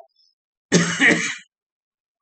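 A man clearing his throat once, a short rough rasp lasting under a second, starting just before the one-second mark.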